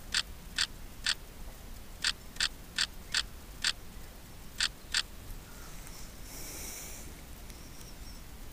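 Camera shutter of a Sony RX10 IV clicking about ten times as single shots, irregularly spaced a third of a second to a second apart, over about five seconds. A brief hissing rustle follows about six seconds in.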